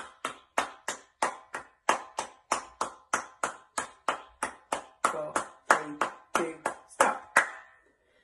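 Hand claps in an even, steady run of about three a second, the quick paired-quaver 'jogging' rhythm, stopping shortly before the end.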